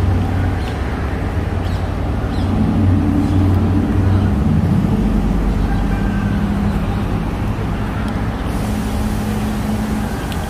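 Road traffic with a vehicle engine running close by, a steady low rumble that swells around three to four seconds in.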